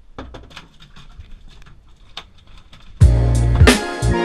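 Faint scattered clicks and knocks, then about three seconds in loud background music with a steady beat starts abruptly.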